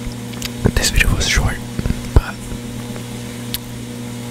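Close-miked mouth sounds: a cluster of wet clicks and soft breathy noises from about half a second to two seconds in, ending in a sharp click. A steady low hum runs underneath.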